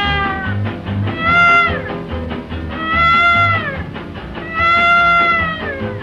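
1936 small New Orleans-style jazz band recording in an instrumental chorus. A lead instrument plays three long held notes that scoop up into pitch and fall away at their ends, over a bass and rhythm section.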